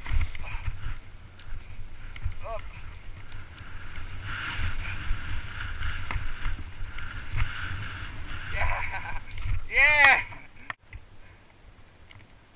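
Mountain bike descending a rough dirt trail: steady rumble and rattle of tyres and bike over the ground, with wind buffeting the helmet camera's microphone. A voice gives a short cry a couple of times, the loudest about ten seconds in, and the noise drops away near the end.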